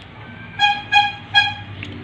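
Three short toots of one pitch, evenly spaced about 0.4 s apart, over a low steady background hum.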